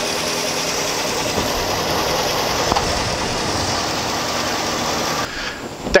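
Ford F-250 pickup's engine idling steadily, heard close up at the open hood; the sound cuts off near the end.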